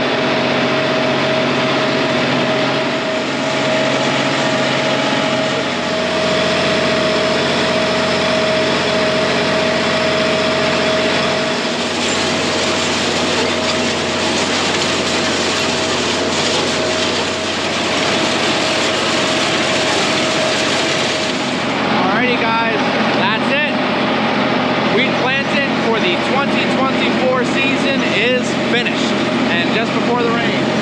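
Compact tractor engine running steadily while pulling a grain drill across a worked field, with a strong steady hum. About two-thirds of the way in the sound changes and wavering higher-pitched sounds join the continuing engine drone.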